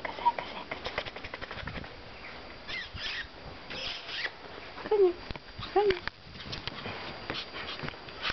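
A small dog scuffing and crunching about in snow, with many scattered small clicks. Two short vocal sounds come about five and six seconds in.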